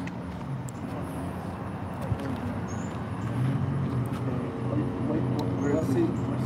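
A motor vehicle's engine running with a steady low hum that grows louder in the second half, with a few faint clicks.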